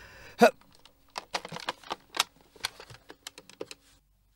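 Mobile phone keypad being dialled: a quick, uneven run of about fifteen button clicks. A short thump comes first, about half a second in.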